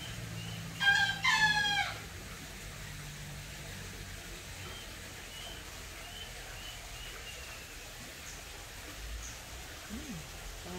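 A rooster crowing once, about a second in, a call of a little over a second in two parts that drops in pitch at the end. Faint short bird chirps repeat in the background.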